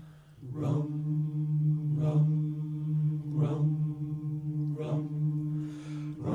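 Music intro: a steady low droning chord with a drum hit about every one and a half seconds, four hits in all.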